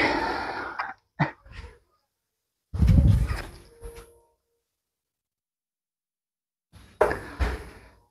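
A steel-tip dart striking a bristle dartboard with a sharp thud near the end. Earlier come a few short, sharp clicks and, about three seconds in, a short, loud, low burst that dies away over a second.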